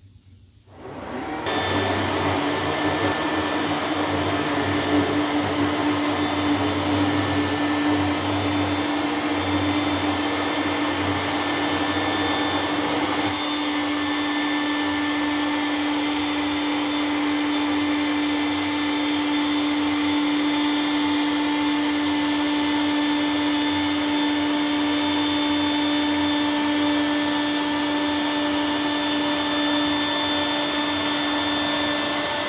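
iRobot Roomba S9+ robot vacuum running, its suction motor giving a loud, steady whir with a steady hum. About thirteen seconds in, a lower rumble under it stops, while the whir carries on.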